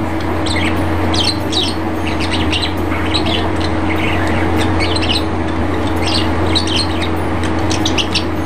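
Birds chirping in many short, repeated calls over a steady low hum.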